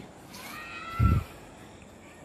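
A high, drawn-out call that rises and then falls in pitch, lasting about half a second, followed about a second in by a short, louder low thump.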